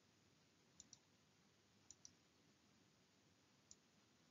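Near silence: room tone with a few faint, sharp clicks. There is a close pair about a second in, another pair about two seconds in, and a single click near the end.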